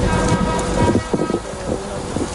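Low rumble of wind buffeting an outdoor microphone, with a faint steady tone over it that has a few higher notes in the first second.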